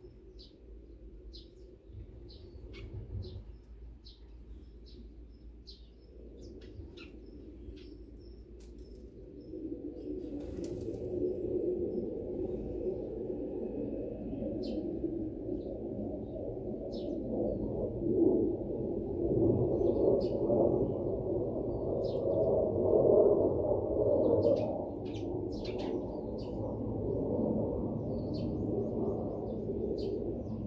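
Small birds chirping in short, high, scattered calls throughout. From about ten seconds in, a louder low rumbling noise of unclear source builds up under the calls.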